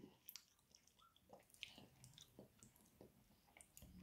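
Near silence with faint chewing of a piece of hazelnut chocolate: a few scattered soft mouth clicks.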